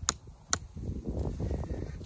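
Two sharp taps of a hatchet head on a tent stake, driving it into the ground, about half a second apart near the start, followed by soft rustling.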